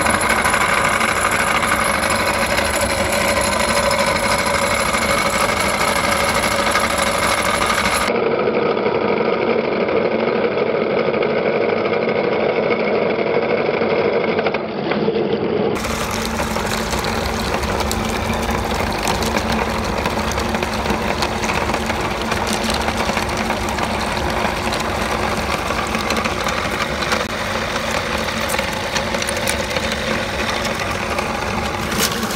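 Motor-driven cast-iron meat grinder running steadily while grinding whole fish through its plate. It runs without a break, with a duller, muffled stretch in the middle.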